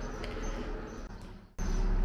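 Faint background noise without speech, fading away. About one and a half seconds in it drops almost to nothing, then a new steady background with a low hum starts abruptly at an edit.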